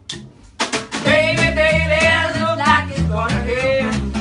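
A small live band strikes up about half a second in: a singer holding long notes over a repeating bass line and a steady beat.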